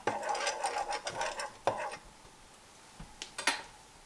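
Metal fork stirring seasoned flour on a ceramic plate: a quick run of scraping strokes that stops a little under two seconds in, followed by a couple of light clicks near the end.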